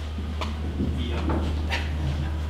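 A pause with a steady low hum and two faint clicks, one early and one near the end.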